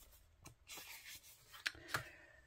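Faint handling of a tarot card drawn from the deck: soft rubbing of card on card, with a couple of light clicks near the end as it is turned over.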